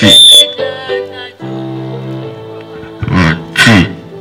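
A girl singing into a handheld microphone over electric keyboard chords. She sings three loud phrases, one at the start and two near the end, each sliding down in pitch.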